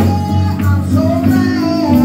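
A woman singing a gospel praise song into a microphone, holding long notes over live instrumental accompaniment with a steady bass.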